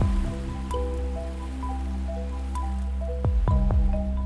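Ambient electronic score: several held tones over a steady low drone, with a few quick falling swoops near the end.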